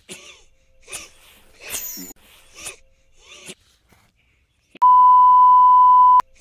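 A cartoon character coughs about five times in short bursts, roughly a second apart. Then, about five seconds in, a loud, steady test-tone beep cuts in and holds.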